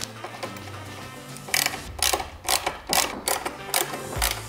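Hand screwdriver turning a screw into the metal base of a monitor stand, under background music with a regular beat that comes in about a second and a half in.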